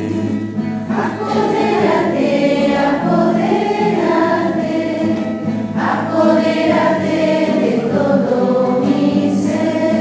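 A group of voices singing a slow hymn to the Holy Spirit, with long held notes.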